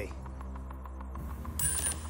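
Tipping Point coin-pusher machine with a steady low hum and faint small clicks of its metal counters, under background music. A short high ringing tone comes in over the last half second or so.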